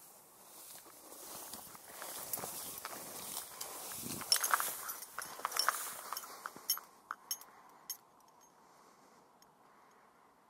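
Rustling that builds over several seconds, with a run of sharp clicks and knocks around the middle, then dies back to a faint hiss.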